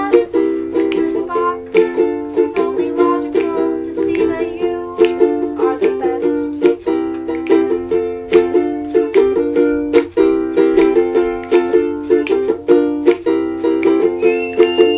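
Ukulele strummed in chords with a steady rhythm.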